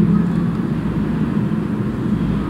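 A steady low hum with a thin hiss above it, no speech.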